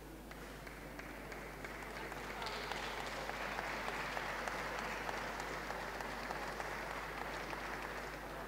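Audience applauding, a dense patter of clapping that swells about two and a half seconds in and eases off slightly toward the end.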